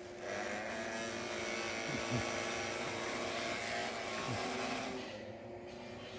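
Small electric motor of an RC boat whining steadily as it runs while being handled at the water's edge. It starts just after the beginning and dies away about five seconds in.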